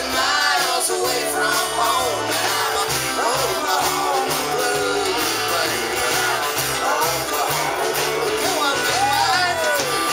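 Live rock band playing: acoustic guitar, electric guitar and drums, with sung vocals.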